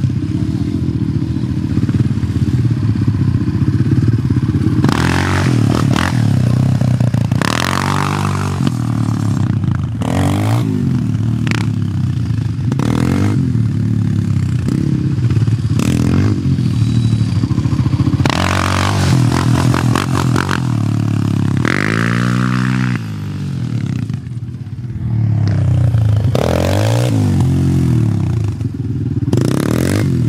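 Sport quad engine revved hard and let fall back again and again, a rising then falling burst of throttle every two to three seconds, with a short drop in loudness a little past the middle.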